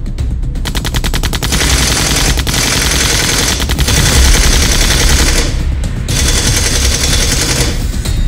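Sound-effect automatic gunfire: a rapid burst of shots about a second in, then sustained heavy firing with brief breaks, over background music with a low bass.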